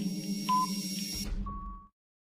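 Countdown timer sound effect over a steady background music track: fast ticking with a short beep once a second, then a longer final beep as the music stops just before the end.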